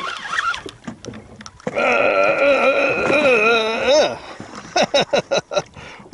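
A man's voice holds a long, wavering hummed or sung note for about two seconds, followed near the end by a quick run of short clipped sounds.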